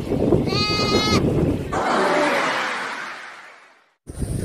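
A goat bleats once, a drawn-out call lasting under a second, over a rough background noise. A hiss then rises and fades away to silence near the end.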